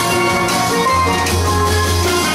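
A steel band playing: many steel pans ring out melody and chords over the low notes of bass pans, with a strong bass note coming in about a second in.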